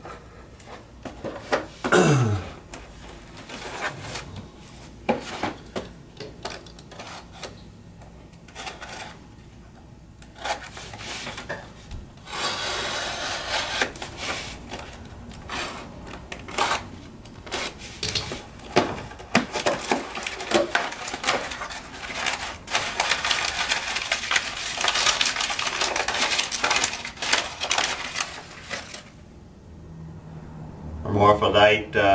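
A cardboard mailing box being opened by hand: scattered tearing and scraping of tape and cardboard, with a short falling squeak about two seconds in. About halfway through comes a long stretch of dense rustling as crumpled packing paper is pulled out and unwrapped.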